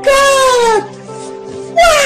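A man's voice letting out long, loud wailing laughs that fall in pitch, one at the start and another near the end, over steady background music.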